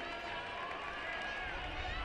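Several indistinct voices of players and spectators calling out and talking at once, carried as pitch-side ambience over a steady background hum of the ground, with no clear words.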